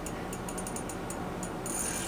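Ice-fishing rod's reel being cranked to bring up a hooked burbot: a run of faint, quick, uneven clicks over a steady low hiss.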